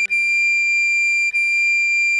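Recorder playing a high D, tongued again twice on the same pitch, over a held E minor chord on keyboard.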